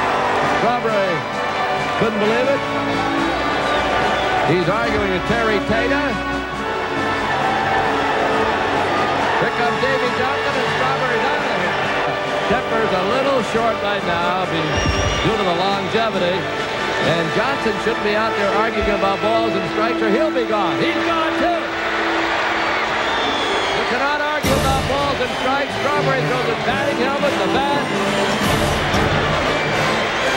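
Background music with indistinct voices over it, and a short sharp knock about 24.5 seconds in.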